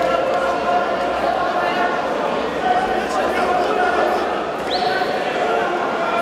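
Several people's voices calling and talking at once, unclear and echoing in a large sports hall: onlookers and corner shouts around a jiu-jitsu match.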